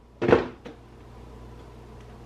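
Cardboard packaging being handled as a boxed vinyl figure is pulled from a mystery box: one short scrape-and-knock about a quarter second in, then a light click, over a low steady hum.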